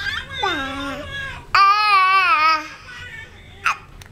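A crying baby doll's recorded infant cry: a falling whimper early on, then a loud wavering wail for about a second from a second and a half in, and a short sharp cry near the end.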